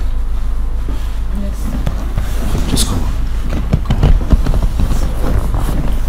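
Indistinct, wordless vocal sounds from a person over a steady low hum, busiest in the second half.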